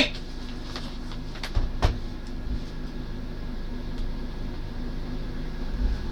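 Steady low hum of a room, with a couple of short knocks about one and a half to two seconds in and soft low thumps later, as objects are handled.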